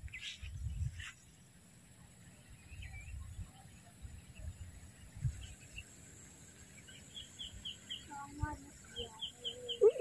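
Faint wind buffeting the microphone in gusts, with a bird chirping in quick runs of short high notes in the last few seconds.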